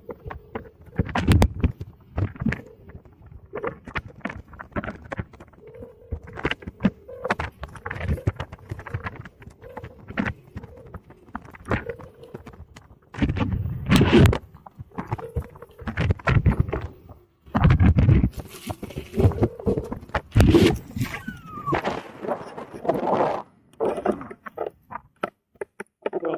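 Irregular knocks, thumps and wind buffeting while riding an electric unicycle over a dirt road, with a faint steady hum underneath; the heaviest low rumbling gusts come about halfway through and again a few seconds later.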